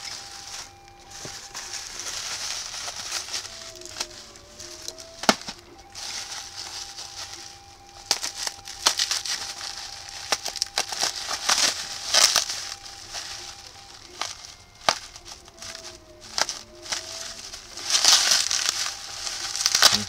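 Plastic bubble-wrap packaging crinkling and crackling as it is handled and opened, with many sharp clicks and pops; it comes in uneven bursts, loudest about twelve and eighteen seconds in.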